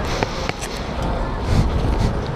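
Wind buffeting a helmet-mounted camera's microphone as a steady rushing noise, with a couple of small clicks in the first half second.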